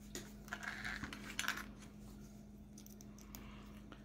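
Small plastic Lego minifigure parts clicking and tapping as they are handled on a table and pressed together, a few light clicks mostly in the first two seconds.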